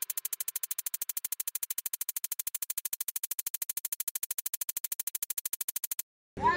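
A rapid, perfectly even electronic pulsing, about ten pulses a second at one steady level, which cuts off suddenly at the end.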